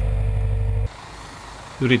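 Excavator engine and hydraulics running steadily, heard close up. A little under halfway through the sound cuts off suddenly and gives way to a much fainter engine idling.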